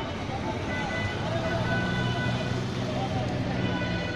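Street traffic noise: motor vehicles running with a steady din, and people's voices mixed in.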